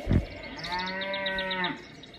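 A thump right at the start, then a cow moos once, one steady call lasting a little over a second, with small birds chirping rapidly behind it.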